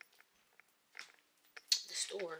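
A short pause in a person's talking, mostly quiet, with a brief soft mouth click about halfway through and a short hiss near the end as speech picks up again.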